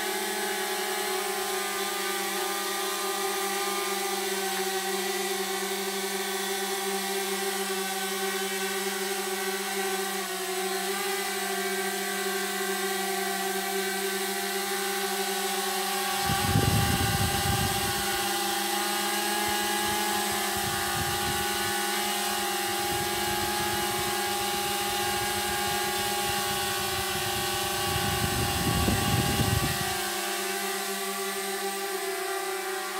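Small consumer drone (DJI Mavic Mini) hovering, its propellers giving a steady, high-pitched hum. There are bursts of low rumble about halfway through and again near the end.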